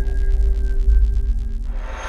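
Electronic intro music for a logo animation: deep bass under two held tones with a fast pulsing rhythm, building into a rising noisy swell near the end.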